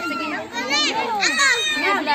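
A group of children's voices chattering and calling out over one another, high-pitched and excited.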